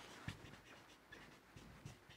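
Faint, irregular scratching strokes of a marker pen on a whiteboard as words are written.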